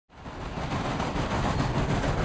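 Steam locomotive hauling a train at speed: a loud, continuous fast rattle of chuffing and wheels clattering on the rails, fading in quickly at the start.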